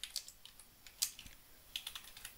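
Computer keyboard typing: a few faint, scattered keystrokes, with one louder key press about a second in.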